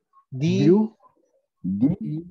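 A person's voice making two short drawn-out vocal sounds, one about half a second in and one near the end, not clear words.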